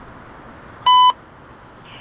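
A single short electronic beep, one clean tone lasting about a quarter second, from a radio scanner just ahead of a CSX defect detector's broadcast. Under it runs a steady low rumble from the passing freight train.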